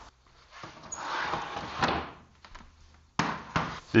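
A quiet shuffling noise, then a sudden thump about three seconds in.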